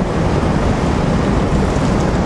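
Steady rushing noise with no words, about as loud as the speech on either side.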